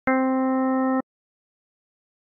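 A single synthesizer note from Native Instruments' Blocks Base 'Additive Synthesis' preset: one steady note lasting about a second that stops abruptly.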